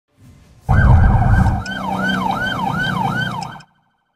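Electronic police siren yelping, its pitch sweeping up and down about twice a second, over a deep rumble for the first second; it cuts off suddenly near the end.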